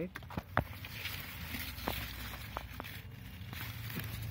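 Rustling of radish leaves and stems as a hand pushes in among the plants and grips them, with a few short sharp clicks of handling.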